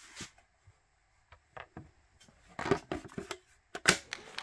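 Hard plastic clicks and knocks as a Milwaukee M18 HD12.0 battery is fitted into a cordless work light's battery mount, ending in two sharp clicks just before the end as it slides home.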